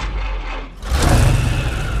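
Deep, steady rumble of a V8 muscle car engine in a film soundtrack, dipping briefly and then growing louder about a second in.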